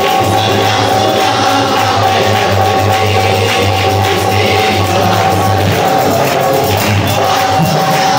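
Harmonium playing held, steady notes under a man singing a psalm (zaboor) through a microphone and PA, with light hand percussion.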